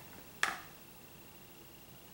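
A single sharp click or tap about half a second in, then quiet room tone with a faint steady high hum.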